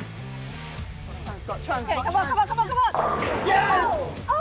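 Background music with excited voices shouting, and near the end a sudden crash of bowling pins as the ball knocks them all down for a strike.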